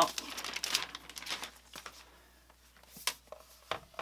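Thin clear plastic wrapping crinkling and rustling as a laptop is slid out of it, then a few light knocks as the aluminium laptop is handled and set down on a desk, the sharpest about three seconds in and near the end.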